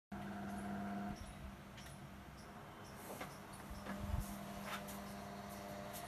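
A low steady hum with a few light clicks. There is a soft thump about four seconds in, and the hum is strongest in the first second.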